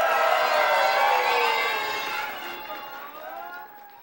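Audience cheering and shouting at the end of a live song, with many voices at once and one long falling call. It dies down toward the end.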